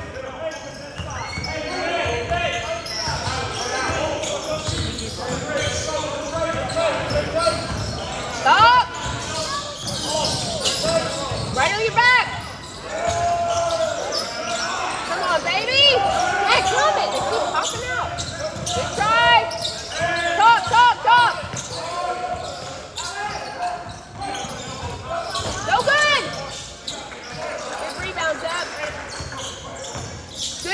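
A basketball game on a hardwood gym floor: the ball bouncing as it is dribbled, many short sneaker squeaks, and players' and spectators' voices echoing in the large hall.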